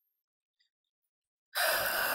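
Dead silence, then about one and a half seconds in a short, noisy breath in close to the microphone.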